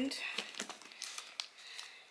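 Packaging crinkling and rustling as toiletries are handled, with a run of short, irregular crackles.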